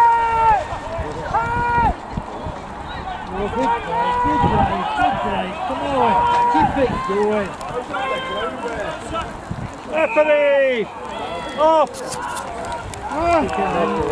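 Rugby players shouting short calls across the pitch, several voices overlapping, with a loud shout falling in pitch about ten seconds in.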